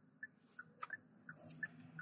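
Car turn signal ticking faintly, about three ticks a second, over a low steady hum inside the moving car, with a single sharper click a little under a second in.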